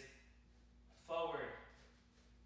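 A man's voice: one short word or call about a second in. The rest is quiet, with a faint steady hum.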